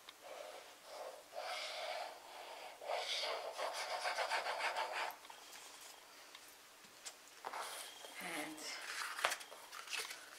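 Fine applicator tip of a liquid glue bottle rubbing across cardstock as glue lines are drawn, in several scratchy strokes over the first five seconds. Later comes card being handled and shifted on the mat, with a sharp tap near the end.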